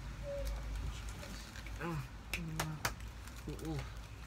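A young man's short exclamations, a flat held "ooh, ooh", in the middle of the stretch, with three sharp clicks in quick succession at the same point and more low talk near the end, over a steady low room hum.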